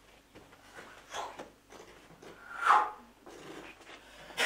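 A man sniffing and gasping in loud breathy bursts, as if savouring a smell; the loudest comes about three seconds in.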